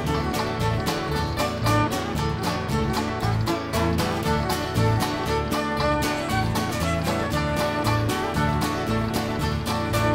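Ceili band playing a lively instrumental Irish dance tune on fiddle, mandolin, guitars and electric bass, with a steady quick beat.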